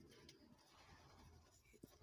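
Near silence, with faint scratching of a pen and hand on paper and a couple of tiny taps near the end.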